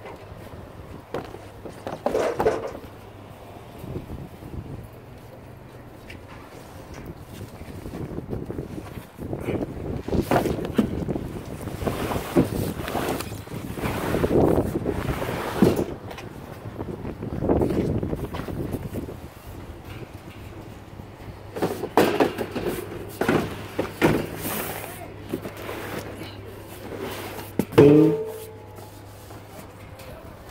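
Cardboard boxes and a lattice planter being loaded into a pickup truck's plastic-lined bed: irregular scraping, sliding and knocks, with wind buffeting the microphone.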